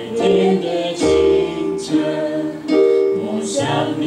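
A man singing a slow song while accompanying himself on a Korg electronic keyboard: held sung notes, each about a second long, over sustained keyboard chords.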